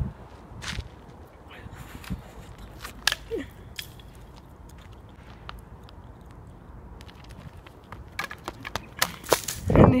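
Footsteps and scuffs on a gravelly paved road with scattered clicks, under a low rumble of wind on the microphone; the steps and handling noise get denser and louder in the last two seconds, ending in a laugh.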